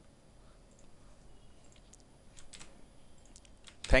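Quiet room tone, then a handful of faint, scattered clicks from about two seconds in, from a computer mouse being clicked.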